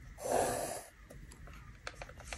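A short, soft breathy exhale of about half a second, followed near the end by a few faint light ticks of pencil and plastic drafting instruments on the board.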